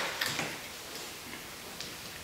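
Quiet room tone with a few faint, irregular ticks and clicks.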